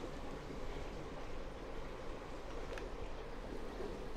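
Steady low hum and water rush from a running reef aquarium's pumps and circulating water.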